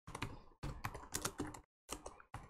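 Typing on a computer keyboard: a quick run of key clicks as a word is typed.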